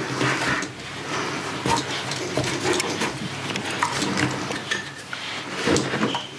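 Handling sounds of camera gear being packed into a padded camera bag: fabric rustling with irregular light knocks and clicks as a rubber air blower and other accessories are pushed into the divider compartments.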